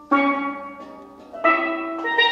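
Double second steel pan struck twice, each note or chord ringing and fading away. The first comes just after the start, and a louder, higher one comes about a second and a half in.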